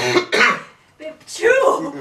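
A person coughing and clearing the throat in two loud bursts, with a short pause between them.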